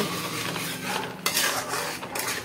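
A metal spoon stirring and scraping a thick mixture around an aluminium kadai on the stove, with a few sharper scrapes against the pan about a second in.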